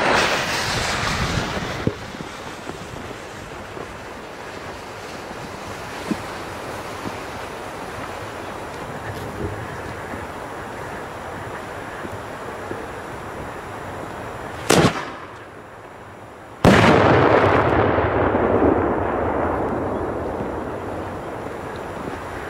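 A gas burner hisses as it lights the fuse. About fifteen seconds in there is a sharp bang, and about two seconds later a much louder blast as a 3-inch cylinder shell bursts on the ground. Its rumbling echo fades away over several seconds.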